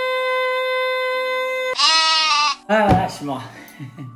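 A man's exaggerated comic vocalising: a long held high note that breaks off just under two seconds in into a short, high, wavering cry, then staccato laughing "ah ah ah".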